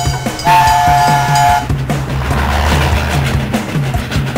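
TV segment intro jingle: music over a steady pulsing beat, with a two-note train-horn sound effect held for about a second early on. A rushing noise then swells and fades.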